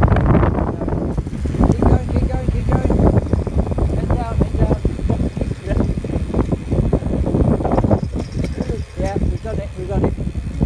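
Heavy wind buffeting a phone's microphone on a tandem bicycle freewheeling fast downhill, with muffled, unclear voices of the riders breaking through now and then, more often near the end.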